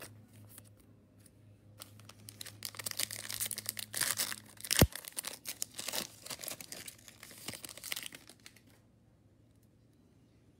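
A foil 2020 Panini Chronicles football card pack being torn open and its wrapper crinkled, with a single sharp snap about halfway through. The crinkling stops about a second before the end.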